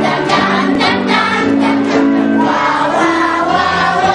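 A group of voices singing together in several parts, holding long notes that change pitch every second or so.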